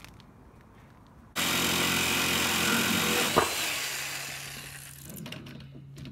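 A power tool starts abruptly and runs at full speed for about two seconds, with a sharp knock near the end, then winds down over a second or so.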